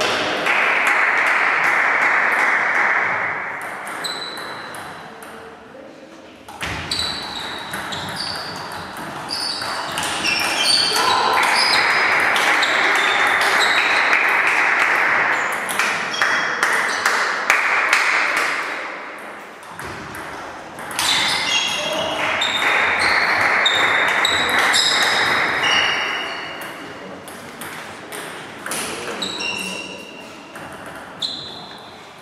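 Table tennis rallies in a sports hall: a stream of sharp clicks of celluloid balls striking paddles and tables, with short high squeaks of shoes on the court floor, over a hiss that swells and fades in long stretches.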